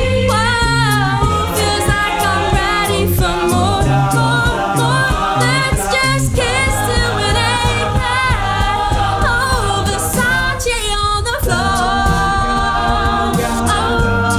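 An a cappella group singing: a lead voice with runs over sung backing chords, a vocal bass line and beatboxed percussion.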